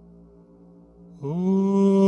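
A faint, steady low drone, then about a second in a man's voice comes in loud. It scoops up in pitch and settles into one long, held chanted note.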